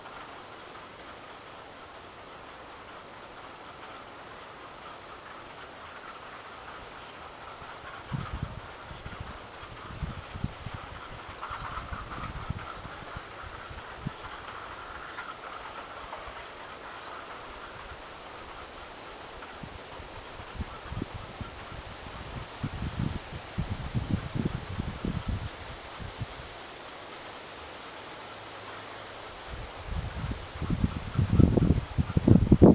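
Wind buffeting the microphone in irregular low gusts, starting about eight seconds in and heaviest near the end, over a steady outdoor hiss.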